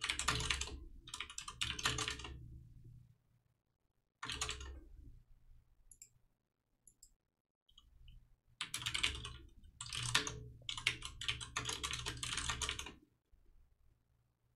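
Computer keyboard typing in quick runs of keystrokes: one run of about three seconds at the start, a short one around four seconds in, and a longer run from past halfway to near the end, with silent pauses between.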